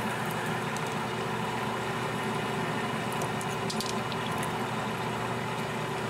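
Metal lathe running steadily as a lubricated parting tool cuts through the spinning bar stock, a steady motor hum with a cutting hiss and a few faint ticks about four seconds in.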